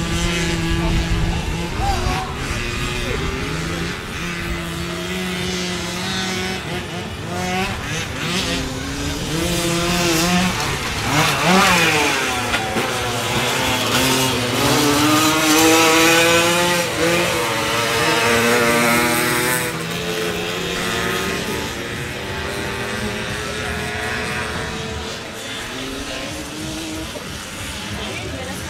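Small two-stroke youth grass-track racing motorcycles (65–75 cc class) racing round the track, engine notes rising and falling with the throttle. One bike passes close about 11 to 12 seconds in, its pitch falling as it goes by, and the engines stay loud again a few seconds later.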